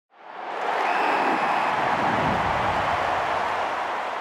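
A rush of noise for a logo intro that swells in over the first half second, holds steady, and starts to fade near the end.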